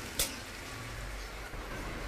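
Spice paste in oil sizzling faintly and steadily in a saucepan as it finishes sautéing, with one short click about a fifth of a second in.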